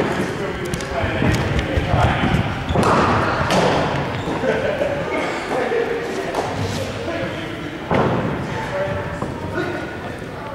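Chatter of voices echoing in an indoor sports hall, broken by a few sharp knocks of cricket balls striking bats and bouncing on the hall floor.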